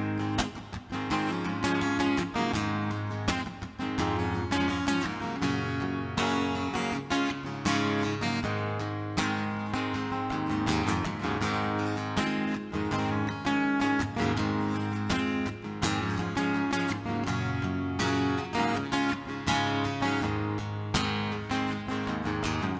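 Solo acoustic guitar strummed in a steady, even rhythm, chord after chord: the instrumental intro of a song before the vocals come in.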